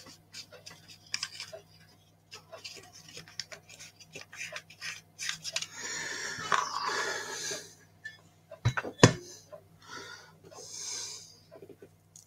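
Close-up handling noise at a worktable as a model locomotive is brush-painted: small clicks and taps, a long breathy exhale at the microphone around the middle, and two sharp knocks about nine seconds in, the loudest sounds, over a steady low electrical hum.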